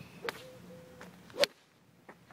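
Golf swing: a short rising swish, then a sharp crack as the clubhead strikes the ball about one and a half seconds in, the loudest sound. A fainter click comes about a quarter second in.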